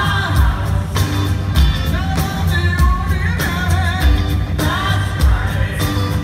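Live rock band playing with a lead voice singing over guitars, bass and a percussion section of strapped-on drums, with a steady driving beat of about two drum hits a second and a heavy low end, as heard from within the audience.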